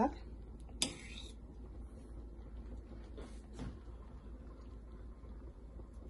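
A metal spoon clinks once, briefly and sharply, against a stainless steel pot about a second in. Two faint soft sounds follow around three and a half seconds, over a steady low hum.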